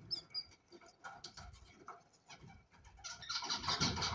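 Cockatiels in a nest box with a five-day-old chick: a few short, thin, high chirps at the start, scattered scratchy sounds, then a louder scratchy burst about three seconds in.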